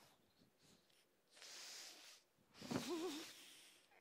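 A person's breathy exhale, then, about two and a half seconds in, a short moan whose pitch quavers up and down.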